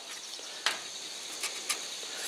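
Faint steady chirring of crickets in the background, with two light clicks about a second apart.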